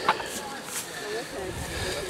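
Background voices of several people talking at a distance. A single sharp knock comes just at the start, and a low rumble near the end.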